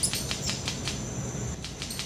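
Red-capped manakin making mechanical wing snaps: a quick, irregular series of about a dozen sharp clicks produced by striking its wings together as a courtship display. A faint steady high insect trill runs behind.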